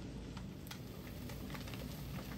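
Fish fillets frying in a nonstick pan over a medium flame: a steady, quiet sizzle with scattered small pops and crackles of spattering fat and moisture.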